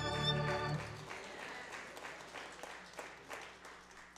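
A violin piece with accompaniment ends on a held note with vibrato about a second in, and applause follows, thinning out and fading away.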